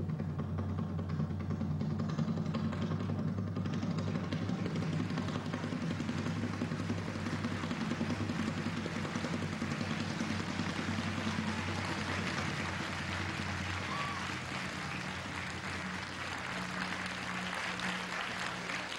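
Theatre audience applauding over closing music of low held notes; the applause starts a few seconds in and builds while the music fades out about two-thirds of the way through.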